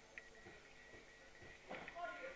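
Near silence in a hall, with a faint steady high hum and a few soft taps, then a brief scuff near the end as a student grips and turns in for a throw on the wrestling mats.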